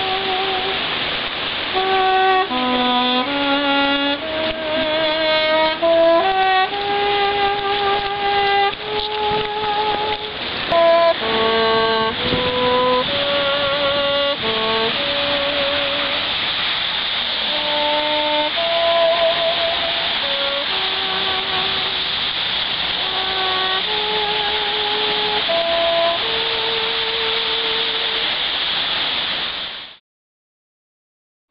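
Saxophone playing a slow melody one note at a time, with vibrato on the held notes, over a steady background hiss. The playing cuts off suddenly at the end.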